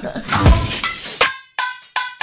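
Edited-in transition sound effect: a low boom with a crash about half a second in, then the outro music starts with ringing tones and sharp beats in the second half.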